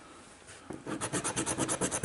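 A coin scratching the coating off a lottery scratch-off ticket in quick, rapid back-and-forth strokes, starting just under a second in.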